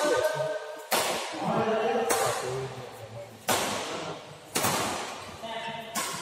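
Badminton rally: rackets smacking the shuttlecock back and forth about once a second, each hit sharp and ringing on in a large echoing hall.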